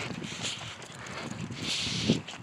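Footsteps of a walker and a small dog on a paved street, with rustle from a handheld phone.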